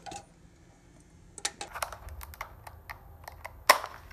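Plastic clamshell of blueberries being handled over an empty plastic food container: irregular light plastic clicks and taps, starting about a second and a half in, with one louder clack near the end.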